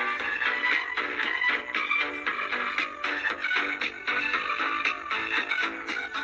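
Music with a steady beat playing from the speaker of a small pocket FM radio, picked up from a homemade FM transmitter fed by a phone; the sound is thin, with almost no bass.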